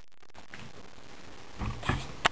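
Quiet room noise, then near the end two short vocal noises from the children.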